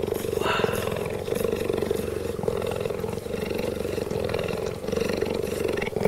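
Cheetah purring steadily while being stroked, a deep, even throbbing.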